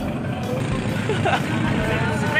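Steady low rumble of a boat's engine under background chatter and music.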